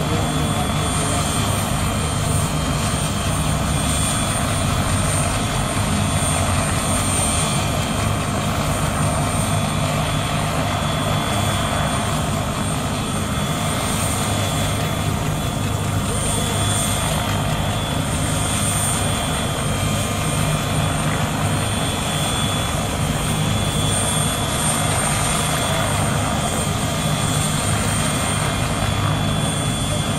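Air ambulance helicopter running on the ground with its rotor turning: a continuous, steady rotor and engine noise with a thin high whine over it.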